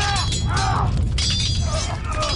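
Repeated crashes and breaking sounds with voices crying out, over a heavy low rumble and music.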